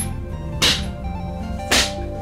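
Wooden training sticks striking a hanging heavy punching bag: two sharp smacks about a second apart, over background music.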